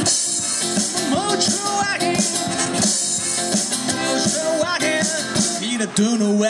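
Blues played on a metal-bodied resonator guitar laid flat on the lap and fretted with a slide, with a harmonica in a neck rack; the notes slide up and down.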